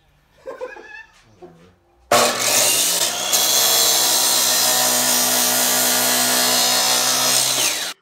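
Miter saw cutting through metal tubing: the motor and blade start into the cut about two seconds in with a loud, steady grinding whine, which cuts off abruptly near the end.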